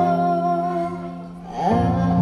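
A girl singing into a microphone over backing music, amplified through stage speakers. She holds a long note that fades about a second in, and a new sung phrase comes in with the music near the end.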